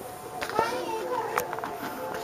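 Faint children's voices, with a couple of sharp clicks about half a second and a second and a half in.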